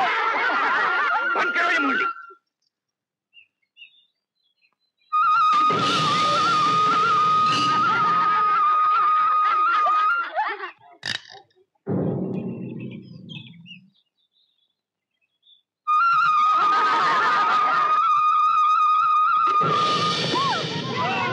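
Film soundtrack music in three passages, each carried by a single held, wavering high note over fuller accompaniment, broken by two short silences. Between the second and third passages there is a sharp click and a brief lower-pitched passage.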